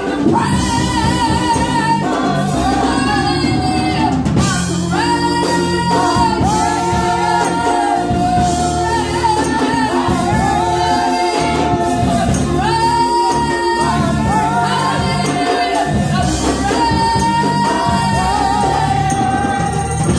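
Gospel song sung by a small group of women through microphones, with long held notes with vibrato, over steady instrumental backing.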